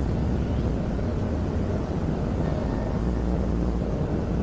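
A steady, even low rumble with no distinct events.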